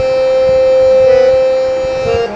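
Harmonium holding one long note of an old Hindi film song melody, its reeds sounding a steady, bright tone that swells slightly toward the middle.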